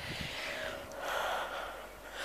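A person's breathing: two soft breaths.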